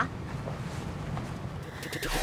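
Quiet outdoor ambience: a low, steady rumble with no distinct event.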